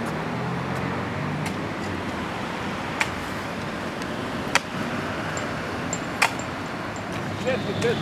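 Steady outdoor background noise with a faint low hum that fades after about two seconds, broken by three sharp clicks or knocks spread through the middle. A voice begins right at the end.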